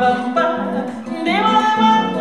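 A woman singing a bossa nova melody over her own nylon-string classical guitar, her voice sliding up into a held note a little past the middle.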